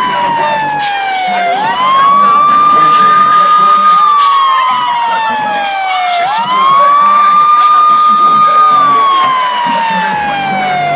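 Siren wailing in a slow cycle: a single tone holds high for about two seconds, slides slowly down, then sweeps quickly back up. It rises about one and a half seconds in and again about six seconds in.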